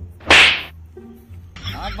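A single loud whip-like swish about a third of a second in, sharp at the start and fading within half a second, over low background music.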